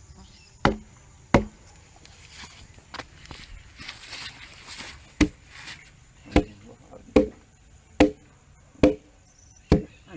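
Sharp wooden knocks as the butt of a stake mallet's new wooden handle is struck down against a log, seating the log mallet head onto the handle. There are two knocks about a second in, then after a pause a steady run of knocks roughly once a second.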